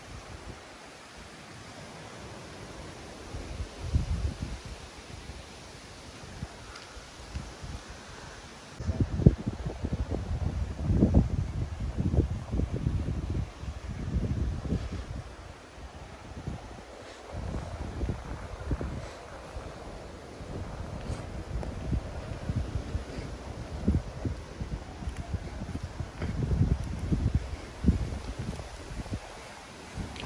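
Wind buffeting the microphone in irregular gusts, heavier from about nine seconds in, over a soft rustle of leaves.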